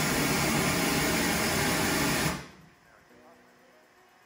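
Pink noise from the Midas M32R's generator played through a stage monitor loudspeaker as a test signal for measuring and equalizing it: a steady, even hiss that cuts off suddenly a little over two seconds in.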